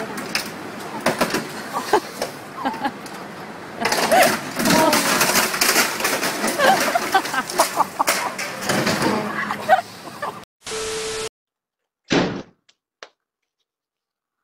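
A box truck's body striking a traffic signal: rough clatter and repeated knocks as the signal is dragged and pieces fall, loudest in the middle of the stretch. The noise cuts off suddenly about ten seconds in, followed by a short steady tone and a brief burst.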